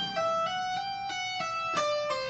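Electric guitar playing a legato lick: a quick run of single notes joined by hammer-ons, pull-offs and a slide rather than fresh picks, climbing and then stepping down note by note in the second half.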